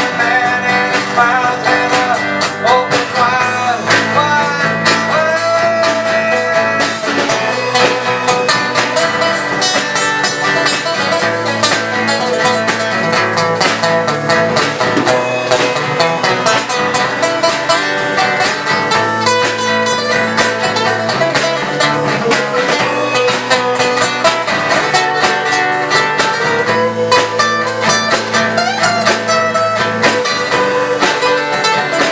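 A live band playing an instrumental passage: acoustic guitar chords and a second guitar's melody line over a drum kit, with no singing.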